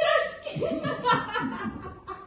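Audience laughing, a short run of chuckles that fades by the end.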